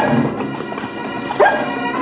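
Organ bridge music dying away as a dog barks twice, once right at the start and again about a second and a half in.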